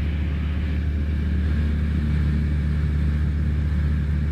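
Piston engine and propeller of a single-engine light aircraft droning steadily, heard from inside the cabin in flight. The note shifts slightly about halfway through.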